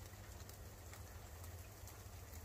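Faint patter of wet snow falling outdoors: an even hiss with a few soft ticks, over a low rumble.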